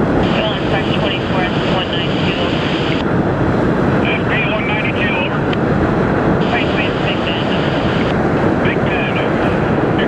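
Freight cars rolling across a steel girder railroad bridge: a steady, loud rumble of wheels on rail, with several stretches of short, high-pitched chirping sounds over it.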